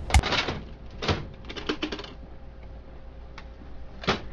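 Hard plastic clicks and knocks from a Dell 5330dn laser printer as its print cartridge is pushed into place and the top door is shut: a sharp click just after the start, another knock about a second in, and a short run of clicks around two seconds.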